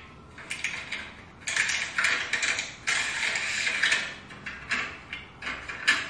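Packaged toiletries, face-mask sachets and then floss and toothbrush packs, being handled and slid into a clear plastic drawer organizer: a run of crackling packet rustles and light plastic clicks, busiest from about a second and a half in to about four seconds, then thinning to scattered clicks.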